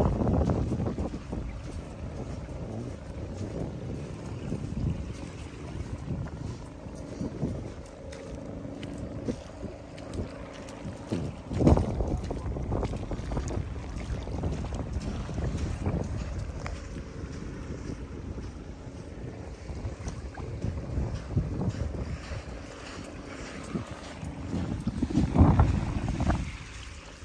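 Wind buffeting the microphone: a low, uneven rumble that swells in gusts, with the strongest gust near the end.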